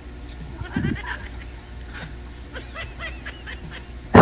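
A woman giggling quietly in short, stifled bits, through the compressed sound of a video call, over a steady low hum.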